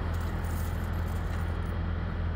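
Steady low hum of idling diesel truck engines, with a faint even hiss above it.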